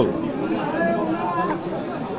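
Overlapping background chatter of several people talking in a crowd, fainter than a close speaking voice.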